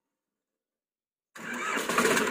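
Silence, then a bit over a second in a Sonalika 740 tractor's diesel engine starts up and builds to a steady run.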